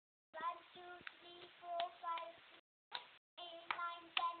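A child singing a few short held notes of a tune, without clear words, with several sharp taps or claps among the notes. The sound is faint and cut by brief dropouts.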